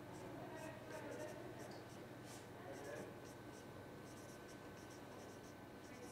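Marker pen writing on a whiteboard: a run of faint, short strokes as a line of maths is written out.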